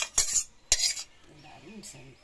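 Metal ladle scraping and clinking against metal cookware while curry is served, three sharp strokes within the first second.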